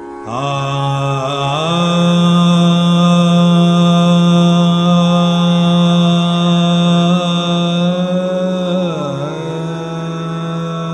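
Male Hindustani classical vocalist singing a slow alap in Raga Jog, with no percussion. He slides up to a long held note, sustains it for about seven seconds, then dips in pitch and comes back near the end, over a steady drone.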